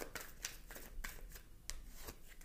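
Tarot cards being shuffled and handled off-camera: a faint, irregular series of flicks and clicks of card stock.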